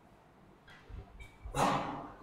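A single human sneeze: a brief breathy intake followed by one loud, explosive burst that fades quickly, from someone who says the cold has given him a chill.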